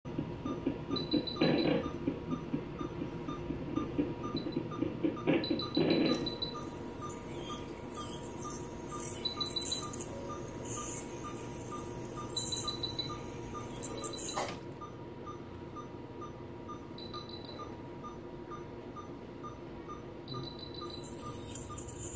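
Anaesthesia patient monitor beeping steadily about twice a second, the pulse beep following the anaesthetised cat's heartbeat, with short runs of higher beeps every few seconds. A high hiss from the dental equipment comes in for several seconds in the middle.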